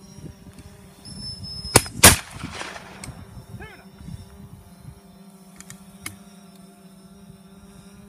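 Two gunshots in quick succession, about a third of a second apart, the second trailing off in an echo.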